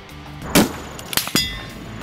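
A Barrett MRAD bolt-action rifle shot, followed a little over half a second later by sharp metallic hits and the ringing of a struck steel target plate.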